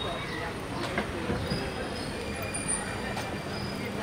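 Steady city street background noise, a low rumble with faint distant voices.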